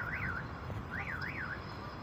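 A high electronic alarm chirp warbling quickly up and down in pitch, twice at the start and twice again about a second in, over a steady hum of outdoor traffic and air.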